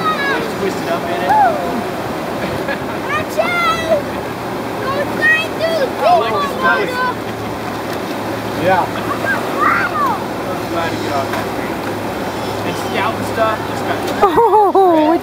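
Steady rush of a shallow river flowing over rocks, with young children's high-pitched voices and short squeals coming and going over it.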